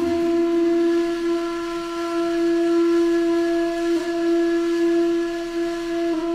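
One long, steady note on a breathy, flute-like wind instrument in a Middle-Eastern style, the 'ancient Egypt' sound played to a cat. The note is held without a break, with a slight wobble about four seconds in.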